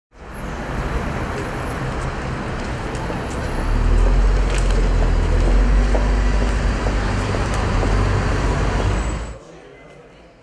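Street traffic noise: a steady hum of passing vehicles with a deep rumble that grows louder about four seconds in, cut off suddenly just before the end.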